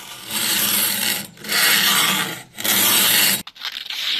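A file drawn along a clamped knife blade's edge in a sharpening jig: three long rasping strokes, each about a second long.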